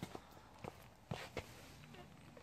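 Faint footsteps on soil: a few soft, short knocks and scuffs, spaced unevenly, over a low background hiss.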